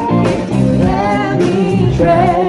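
A live band playing a song, with a singer and electric guitar.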